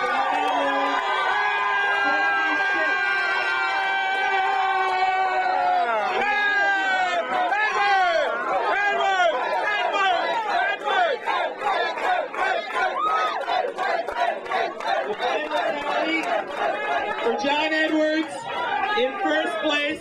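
A crowd of political supporters cheering and shouting, many voices at once. For the first five or six seconds the voices are held in long, drawn-out shouts, then they break into a jumble of excited yells and chatter.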